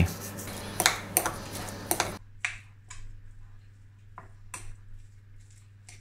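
A metal fork tapping and clicking against a ceramic plate while mashing crumbled vegan feta filling: a scatter of light, sharp ticks, some spaced a second or so apart.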